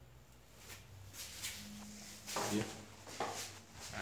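Mostly quiet small-room tone with a few faint clicks of handling, then a man's brief spoken hesitation, 'e', about two and a half seconds in.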